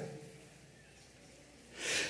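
Near silence as a man's last word dies away, then a quick in-breath near the end, picked up close by his headset microphone.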